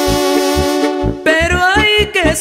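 Mexican banda brass band playing an instrumental passage. Brass holds a chord over a steady low oom-pah beat of about four pulses a second. After about a second, a higher melodic line comes in with rising notes.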